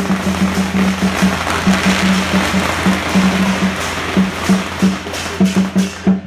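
A string of firecrackers going off as a dense, rapid crackle, thickest about two seconds in. Procession percussion beats along underneath, with a low tone that keeps breaking on and off.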